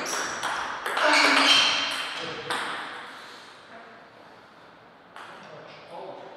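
Table tennis rally: the ball clicks sharply off rackets and table about twice a second, stopping about two and a half seconds in. A loud shout rises over the last strokes, and two faint ball bounces follow near the end.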